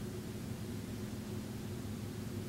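Steady room tone: a constant low hum with an even hiss over it, unchanging throughout.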